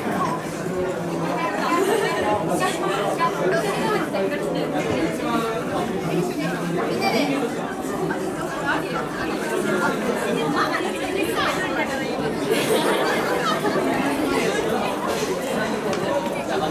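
Chatter of many overlapping voices: a group of girls talking at once, with no single voice standing out.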